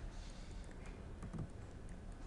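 A few faint computer keyboard keystrokes over a low steady hum.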